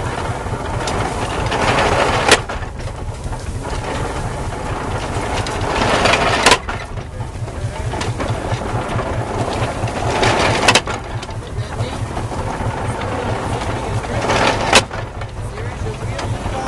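Belt-driven 1910 Columbia hay baler running off a Farmall H tractor. The tractor engine pulses steadily underneath, and the baler works in a cycle about every four seconds: a building clatter that ends in a sharp crack, four times.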